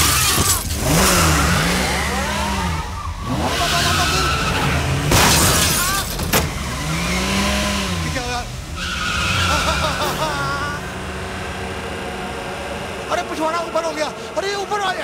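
A man wails and yells in panic, his voice rising and falling without clear words, as a car spins and skids around him with tyre squeals and loud rushing swooshes.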